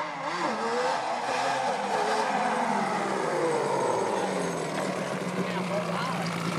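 Yamaha Banshee ATV's two-stroke twin engine running as the quad approaches and comes close, getting louder over the first second and then holding a fairly steady note, with a few shifts in pitch as the throttle changes.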